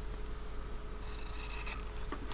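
Scissors cutting through layered fabric, trimming the edge of a stitched fabric tag, with one longer rasping cut about a second in.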